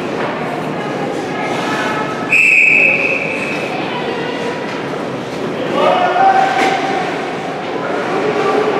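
A referee's whistle gives one short, steady, shrill blast about two seconds in, over the noise of an ice arena's crowd. A little before the end, spectators' voices call out.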